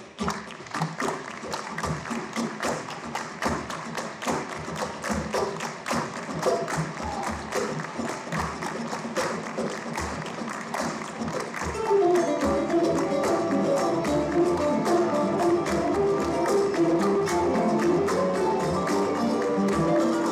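Live choro ensemble: for about the first twelve seconds, rhythmic hand clapping and percussive taps over a sparse accompaniment. Then the bandolins and cavaquinho come in together with a plucked melody and the music grows louder.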